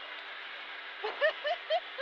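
A crew member laughing in a few short pulses, about four a second, starting about a second in, over the steady low hum of the Honda Civic Type-R R3 rolling slowly, heard inside the cabin.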